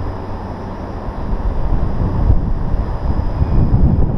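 Wind on the camera microphone: an uneven low rumble that rises and falls, over the general outdoor hum of the city.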